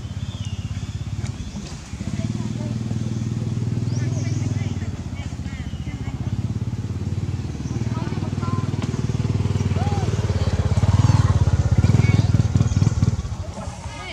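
Motorcycle engine running steadily at low revs, its fast even firing pulses continuous, swelling louder about eleven seconds in and falling away about thirteen seconds in.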